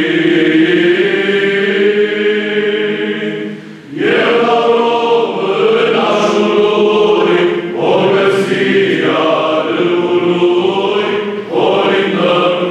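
Male Byzantine psaltic choir singing a Romanian carol (colind) unaccompanied, with a steady low held note under the moving melody. The singing breaks briefly for a breath about four seconds in.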